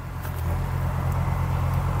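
Small 25 hp three-cylinder diesel engine with a mechanical injection pump idling steadily, a low even hum that swells slightly in the first half-second.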